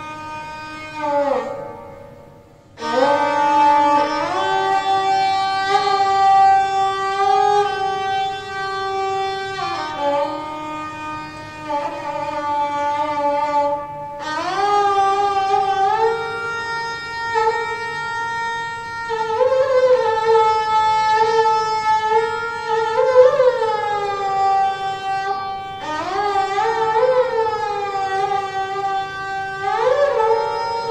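Solo sarangi bowed in Hindustani classical style: long held notes joined by slow slides up and down in pitch. The sound drops away briefly about two seconds in and again about halfway through.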